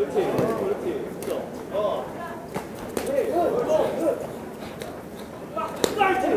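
A few sharp smacks of boxing gloves landing, about two and a half, three and six seconds in, over faint shouting voices from the corners and the crowd.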